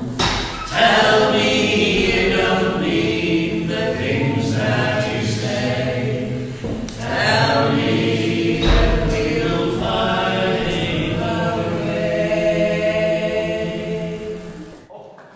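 Several voices singing a folk song together in harmony, in phrases of long held notes.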